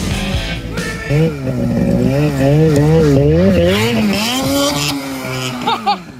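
Snowmobile engine running hard in deep snow, its pitch rising and falling about twice a second, then holding steadier before it drops away near the end.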